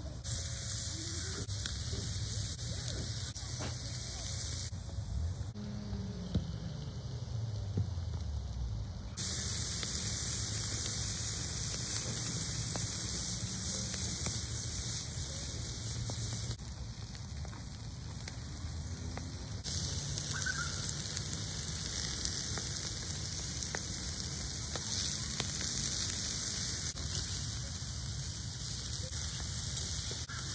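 Chicken sizzling and crackling on a hot charcoal grill, an even hiss that drops out twice for a few seconds. A steady low rumble runs underneath.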